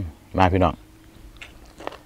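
A man chewing a mouthful of sticky rice with grilled rice-field rat and bean salad, with small wet mouth clicks in the second half, after a short spoken phrase.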